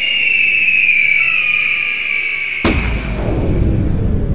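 A long whistle that slowly falls in pitch, then a sudden deep boom about two and a half seconds in that rumbles on: a dramatic sound effect.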